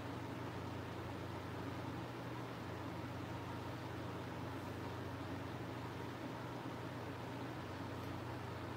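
A fan running steadily: an even airy hiss with a low hum underneath.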